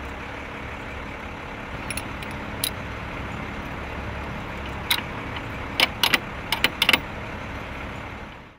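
A truck engine running steadily, with a series of sharp metal clicks and clinks as gear is handled in the bucket, most of them bunched together in the second half.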